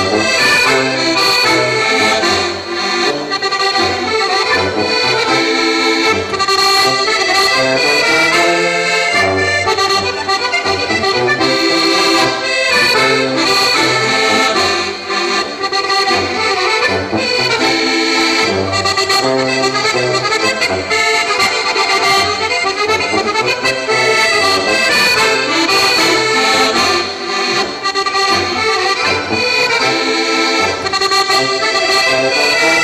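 Two accordions playing a folk dance tune together, with a tuba pulsing out the bass line and drums keeping the beat.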